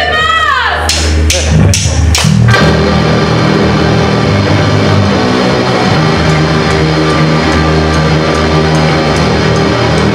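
Punk band playing live, loud: a shouted voice at the start, four sharp drum hits counting in, then the full band with electric guitar, bass and drums coming in together about two and a half seconds in and playing on steadily.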